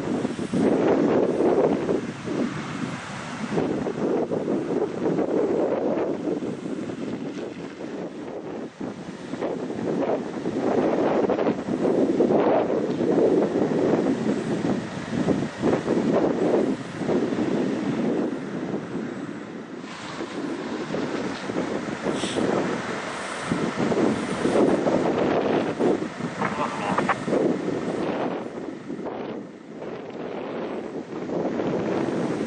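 Wind buffeting the camera microphone in uneven gusts, swelling and dropping every few seconds.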